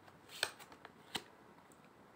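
Tarot cards handled and shuffled by hand: a short papery rustle about half a second in and a single crisp card click just after a second, with a few faint flicks between.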